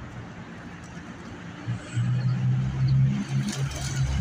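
A motor vehicle's low engine rumble comes in about halfway through and grows loud. Near the end, a short burst of wing flapping as rock pigeons take off from the street.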